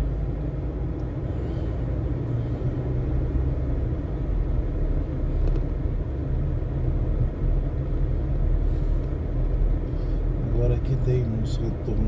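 Car interior noise while driving slowly: a steady low rumble of engine and tyres. A voice begins near the end.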